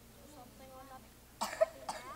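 A faint voice answering away from the microphone, then two short coughs about a second and a half in.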